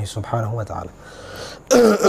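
A man's voice for under a second, then, near the end, one loud cough as he clears his throat.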